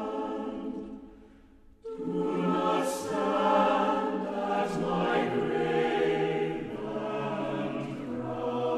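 A choir singing slow, sustained chords; one phrase fades away about a second in and the next begins about two seconds in.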